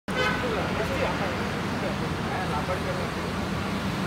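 Street traffic: car engines running and passing, with a steady low hum, and indistinct voices in the background.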